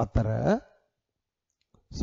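A man's voice speaks briefly, just after a sharp click, and then cuts to dead silence for about a second before speech starts again near the end.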